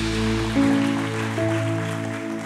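Worship band music winding down to soft held keyboard chords, with no drums; the deep bass fades out about half a second in and new sustained notes come in twice.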